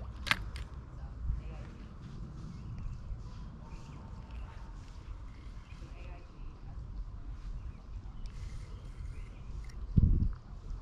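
Low, steady rumble of wind buffeting the microphone, with a sharp click about a third of a second in.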